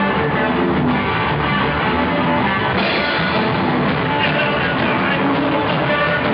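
A live rock band playing loudly: distorted electric guitar over a drum kit with cymbals, the sound growing brighter about three seconds in.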